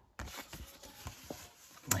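Paper greeting card being handled and opened: a soft papery rustle with a few light ticks.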